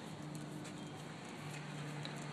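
Faint sounds of tennis play on an outdoor hard court: scattered light taps of shoes and ball over a steady low hum.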